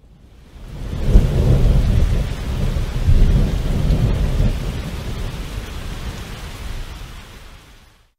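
Thunderstorm: rolling thunder over steady rain. It swells in to its loudest rumble about a second in, rumbles again around three seconds, then slowly fades away.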